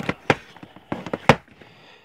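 Plastic Blu-ray cases and a box set being handled on a shelf, clacking and knocking against each other: about five sharp clicks, the loudest about a second and a quarter in.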